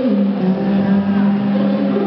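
Live pop band music: one low note steps down at the start and is then held steady for about two seconds.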